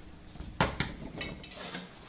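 Light handling sounds from an MDF shelf template on steel shelf brackets: two sharp clicks a little over half a second in, then a brief soft scrape.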